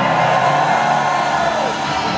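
Live metal band playing loud electric guitars through the venue PA, heard from the audience, with the crowd cheering and whooping over it. A held high note bends downward near the end.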